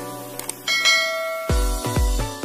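A bell chime sound effect rings out about two-thirds of a second in, over intro music, as the notification bell of a subscribe animation is clicked. Deep low hits follow, about half a second apart, near the end.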